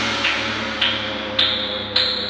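Electronic pop track in an instrumental build-up: a sustained synth chord over a noise layer, with a sharp hit about every half second, each one brighter than the last.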